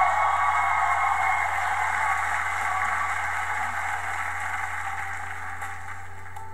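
Studio audience cheering and applauding, loudest at the start and slowly dying away over several seconds.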